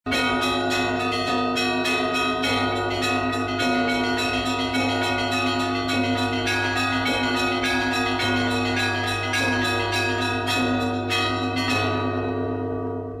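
Church bells ringing in a fast, steady peal: several bells of different pitch struck about three or four times a second over a deep, sustained hum. The strikes stop near the end and the bells are left ringing on.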